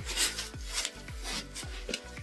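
A few short scraping, rubbing strokes against a small plastic tarantula enclosure as a feeder insect is put in, over faint background music.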